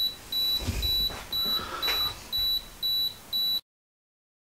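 Canon 5D Mark III self-timer beeping in a countdown: short, even high beeps about twice a second, with a few soft low thumps about a second in. The beeps cut off suddenly near the end.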